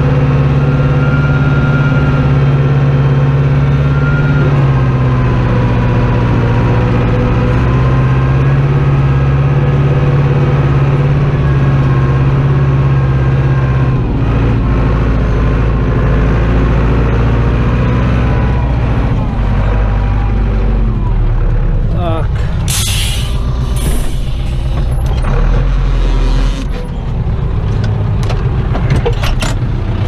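Zetor 7245 tractor's diesel engine running steadily, heard from inside the cab; its note drops lower about halfway through. In the last few seconds there are several sharp knocks and rattles over the engine.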